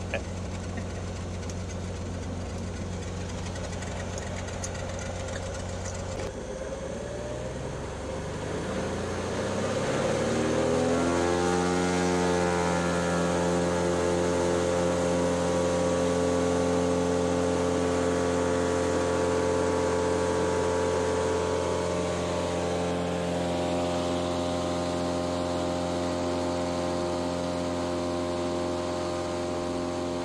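Single-engine floatplane's piston engine and propeller, heard from inside the cabin. It runs steadily at low power, then about a third of the way in revs up over a few seconds and holds a louder, higher steady pitch as it powers up for takeoff from the water.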